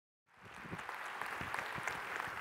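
Audience applauding. It fades in about a third of a second in after a brief silence and then holds steady, a dense patter of many hands clapping.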